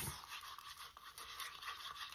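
A stir stick scraping around the inside of a paper cup as it mixes tinted epoxy resin: a faint, irregular scratching.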